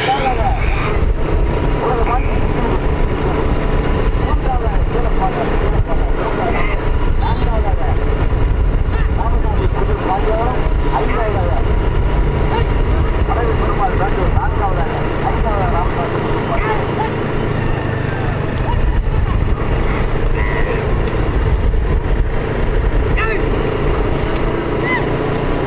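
Motor-vehicle engines running steadily, with a thin steady whine above the rumble, and voices shouting and calling over them throughout.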